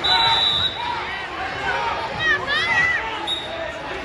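A referee's whistle blows once, a short steady shrill tone, to restart a youth wrestling bout. Spectators and coaches then shout and yell in a reverberant gym.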